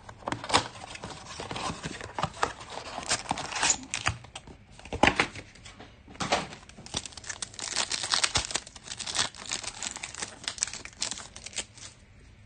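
A Panini Absolute Football blaster box being torn open and its foil-wrapped card packs handled and ripped open: a busy run of sharp crackling, crinkling and tearing, loudest around half a second in and again about five to six seconds in.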